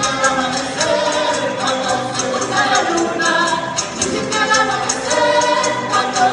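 Live Chilean folk music for a campesino dance: voices singing together over strummed guitars, with a steady percussive beat.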